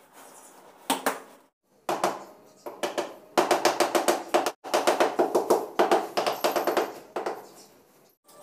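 Ceramic wall tile being tapped rapidly with a tool handle to bed it into the adhesive: a few strikes about a second in, then fast runs of sharp taps, about six a second, through the second half, each with a brief ringing from the tile.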